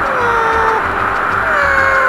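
Domestic cat meowing twice: a long call that falls in pitch, then a shorter falling one near the end. A steady high hum runs underneath.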